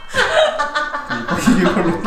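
People laughing and chuckling, with some voices mixed in.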